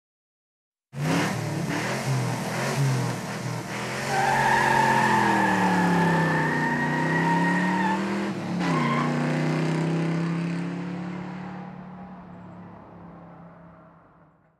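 A car engine revving hard, its pitch sweeping down and back up. Over it a steady high-pitched squeal runs from about four to eight seconds in. The sound fades out toward the end.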